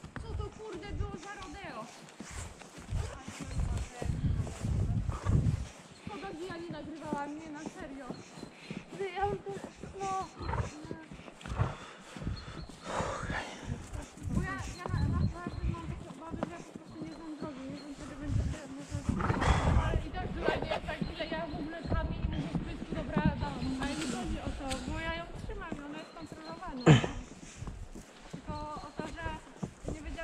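Indistinct talking between riders over the low, uneven thudding and rumble of a horse being ridden along a sandy forest track, with one sharp knock near the end.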